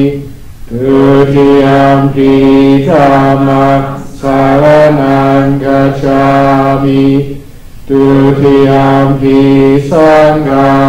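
Buddhist chanting in Pali, voices intoning long phrases on a nearly steady pitch. Brief pauses for breath come about half a second in and again near the three-quarter mark.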